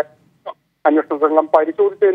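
Speech only: a news reader's voice-over in Malayalam, with a short pause near the start.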